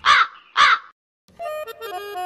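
Two loud crow caws in quick succession, then a moment of dead silence before light background music begins.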